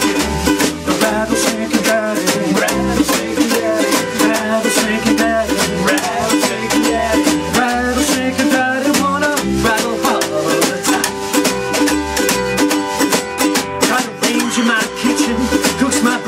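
Acoustic swing trio playing an instrumental passage: strummed ukulele, upright bass and snare drum in a steady, busy rhythm, with a harmonica carrying the wavering melody.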